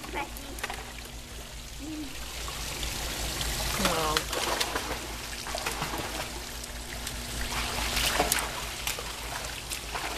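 Pool water sloshing and trickling at the edge, with small splashes as a dachshund paws and bites at a floating foam squirt gun; the water noise swells twice. A low steady hum runs underneath.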